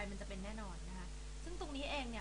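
A woman's voice talking, with long held syllables, over a steady low electrical hum.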